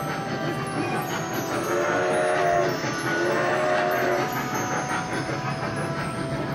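Wattman trackless mall ride train sounding a recorded train whistle, two long rising-and-falling blasts about a second each near the middle, over steady background music.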